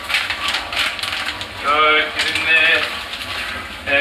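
Foil sachets of dried wine yeast crinkling as they are handled and emptied into a plastic drum of warm water, a dense crackly rustle in the first second and a half that recurs more faintly later.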